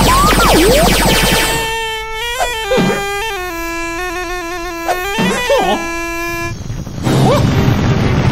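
A reedy pipe with a nasal, snake-charmer tone plays a short ornamented melody of held notes that step downward, then stops. Before it come swooping cartoon glides that rise and fall.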